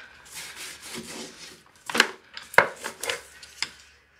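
Handling noise from someone working by hand overhead while standing on a wooden bed base: soft rubbing and scraping, with three sharp knocks about two, two and a half and three and a half seconds in.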